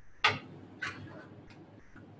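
Two sharp clicks about half a second apart, then a fainter third click.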